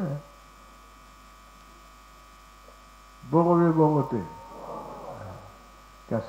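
Faint, steady electrical hum from a microphone and sound system. A little past halfway, a voice cuts in loudly with one drawn-out syllable lasting under a second, then trails off.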